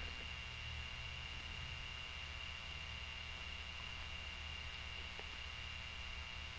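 Room tone of the recording: a steady low electrical hum with a faint even hiss.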